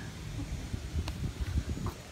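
Uneven low rumble on the microphone, with a single sharp click about a second in.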